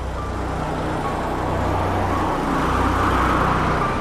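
Road traffic with a vehicle passing close by: a rushing noise that builds to its loudest about three seconds in and then begins to fade.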